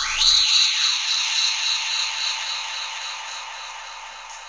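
An edited-in transition sound effect: a quick rising swish that settles into a high, shimmering hiss and slowly fades away.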